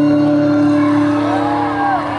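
Live band holding a closing chord, with electric guitar and bass ringing steadily. Arching glides in pitch rise and fall over it near the end.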